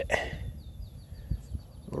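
A bird trilling faintly: a rapid run of short, high, falling notes, about nine a second, starting about half a second in, over a low rumble.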